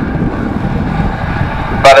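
Autograss racing cars' engines running hard as the pack goes down the dirt track, a steady rumbling drone.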